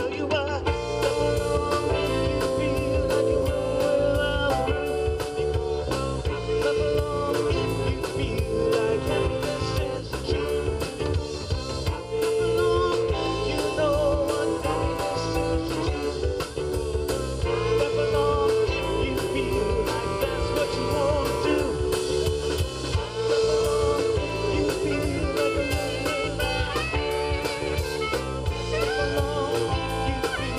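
Live band playing a blues song: electric guitar, keyboard, saxophone and drum kit over a steady beat, with a man singing lead.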